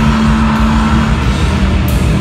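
A sludge/doom metal band playing live and loud: heavy distorted guitars and bass hold a low note, with drum cymbal crashes at the start and again near the end.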